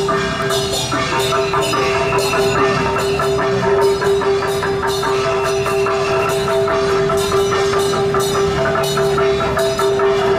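Taiwanese temple procession music: rapid, dense percussion strikes of gongs, cymbals and wood-block-like hits over a steady held tone.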